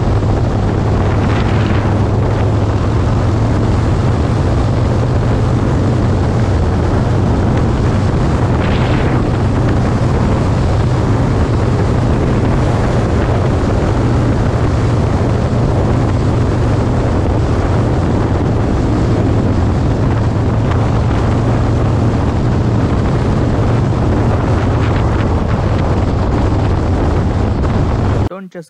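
Harley-Davidson Roadster's 1202 cc air-cooled V-twin running steadily at highway speed. It is heard as a constant low drone mixed with heavy wind noise on the camera microphone.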